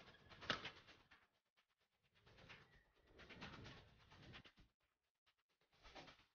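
Near silence, broken by faint, indistinct sounds in three short spells. The first spell has a sharp peak about half a second in.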